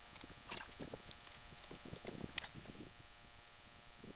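Faint scattered clicks, scrapes and rustles of hand work on battery wiring: a screwdriver at a battery terminal and wires being handled. One sharper click sounds about two and a half seconds in.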